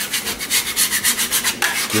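Bench scraper scraped back and forth across an end-grain wooden butcher block, in rapid strokes of about five or six a second, clearing food particles and dirt off the surface before it is oiled.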